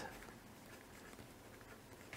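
Faint scratching of a fineliner pen writing on paper.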